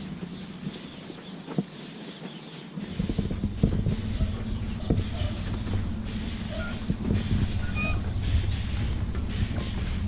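Dairy cows shuffling about on a concrete yard, with many short knocks of hooves on concrete, over a steady low hum that sets in about three seconds in.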